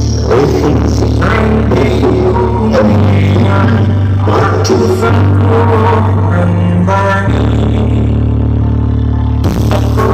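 Loud music played through a large carnival parade sound system of stacked line-array speakers. Deep bass notes are held for several seconds each, changing about three seconds in and again about seven seconds in, under a melody.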